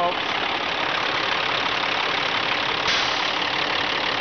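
Caterpillar C12 diesel engine idling steadily, heard close with the hood open and the dipstick pulled, growing hissier about three seconds in. There is no blow-by coming out of the engine crankcase.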